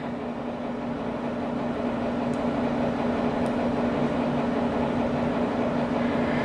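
A steady mechanical hum with a constant low tone, with two faint ticks in the middle.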